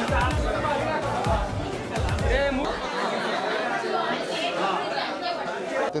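Crowd chatter with several voices overlapping, over music with a regular deep bass beat that stops about three seconds in.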